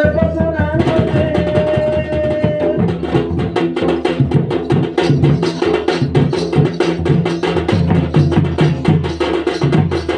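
Dhol drum played in a fast, driving rhythm for a danda dance. A long held high note sounds over the drumming for the first three seconds, then the drums carry on alone.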